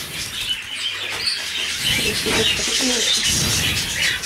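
Many canaries chirping and twittering, with some low rustling about halfway through.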